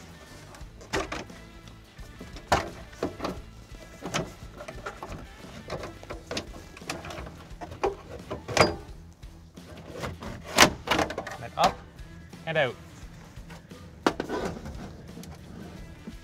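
Plastic dash trim panel around a Chevy Silverado instrument cluster being pried off by hand, its retaining clips popping loose in a string of separate sharp clicks and knocks, over background music.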